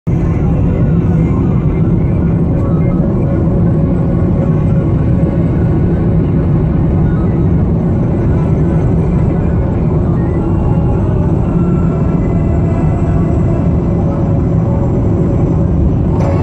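Background music with a steady low rumble underneath.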